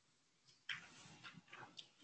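Near silence, then from under a second in a scatter of faint clicks and taps, like handling noise near the microphone.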